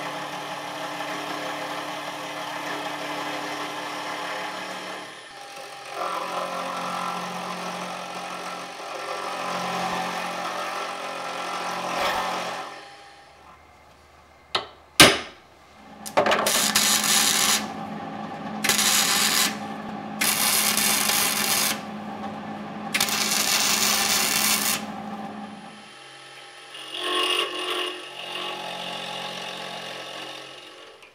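Small milling machine running, its end mill cutting a welded steel part square, for roughly the first twelve seconds. After a short pause and a sharp click, four long rasping strokes of a hand file on the steel part held in a vise, over a steady hum. The mill is cutting again near the end.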